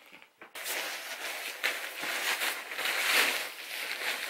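Crinkly mattress protector rustling and crackling as it is pulled and smoothed over a mattress, starting about half a second in.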